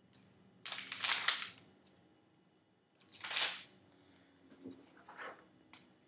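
Plastic lab items being handled as a cell spreader is taken out and an agar plate is uncovered. There are two short rustling bursts, about a second in and about three and a half seconds in, then a few fainter handling noises near the end.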